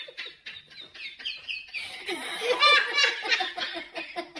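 A man laughing hard: high-pitched laughter in quick, breathy bursts, loudest about two to three seconds in.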